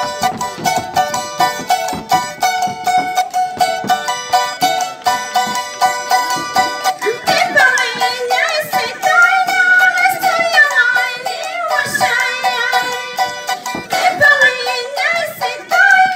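Andean folk music: a string instrument strummed fast and bright, and about halfway through a woman starts singing in a high, amplified voice that slides between notes.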